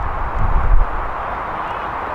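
Wind buffeting the microphone, with a low rumble gust about half a second in over a steady outdoor hiss.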